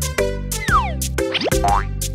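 Children's cartoon background music with a steady plucked beat, overlaid with cartoon sound effects: a falling pitch glide just after half a second in, then a quick rising glide about a second and a half in.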